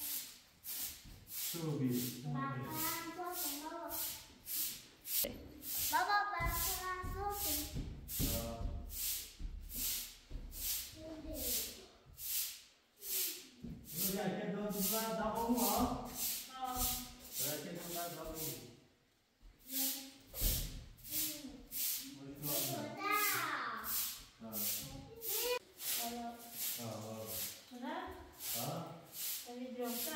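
Broom sweeping a bare concrete floor in short, brisk strokes, about two a second, with voices talking over it at times.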